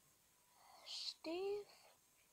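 A person's voice, close and soft: a breathy whisper about a second in, then one short spoken syllable, with quiet room tone around them.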